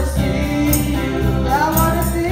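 A group of women singing a gospel worship song together into microphones, amplified over a sound system, with a steady deep bass accompaniment and a high percussion beat about twice a second.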